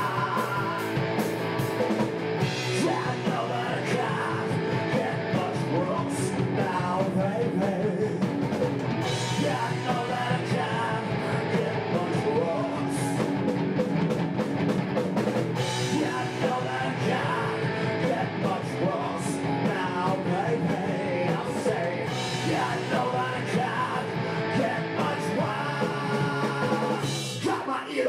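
Live rock band playing: electric guitar, bass guitar, drums and keyboard, with a male lead singer.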